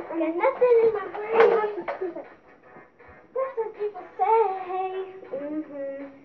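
A child singing without clear words, in drawn-out, wavering notes, with a short pause a little before halfway.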